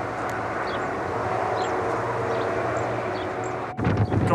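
Steady outdoor rushing noise with a low hum under it, swelling slightly and easing off, with a few faint high chirps; it cuts off abruptly near the end.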